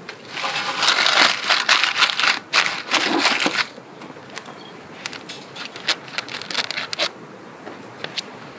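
Dry twigs rustling and crackling as they are packed into a metal fire ring and a tinder bundle is pushed in among them, loudest in the first half. After that come lighter scattered clicks, with a brief high metallic ringing as a ferro rod and striker are handled.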